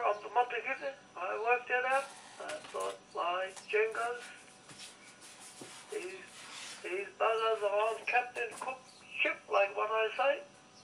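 Speech heard over a telephone: a thin voice in short phrases, with a pause of about three seconds in the middle.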